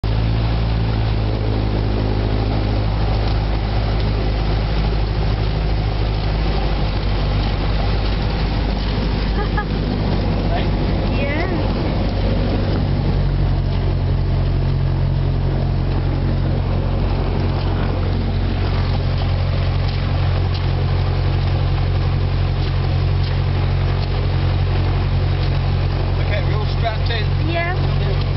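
Single-engine light aircraft's piston engine running steadily, heard from inside the cabin. Its note steps up to a higher, steady speed about halfway through.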